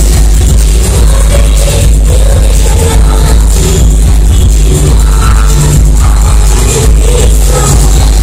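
Live dance-pop music played loud through a concert PA, with a heavy steady bass beat and a woman singing into a microphone over it.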